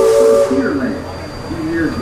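Riverboat steam whistle blowing two steady notes together with a hiss of steam, cutting off about half a second in.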